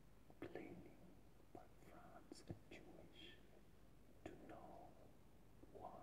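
A man whispering, faint and breathy, in short phrases with pauses between them; the words are not made out.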